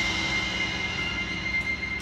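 A school band's held chord dying away slowly, with a few steady high notes sustaining over the fade.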